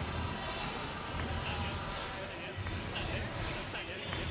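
Indistinct voices and chatter in a basketball hall, with low thumps of basketballs bouncing on the wooden court at uneven intervals.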